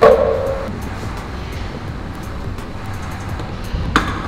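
Weight plates being put back on a gym plate rack: one clank with a brief ringing tone, then another knock near the end, over background music.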